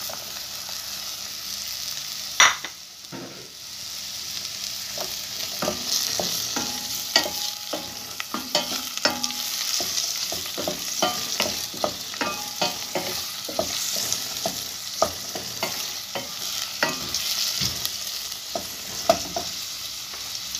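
Diced onion and carrot sizzling in a stainless steel pot while a wooden spoon stirs and scrapes through them, with frequent small knocks of the spoon against the pot. A single sharp knock about two seconds in is the loudest sound.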